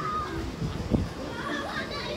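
Background voices of children talking and playing, fainter than a nearby voice and higher-pitched, with a short knock about a second in.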